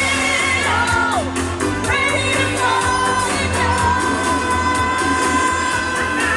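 Live pop music: women singing into microphones over a band backing with a steady bass, holding one long note through the second half.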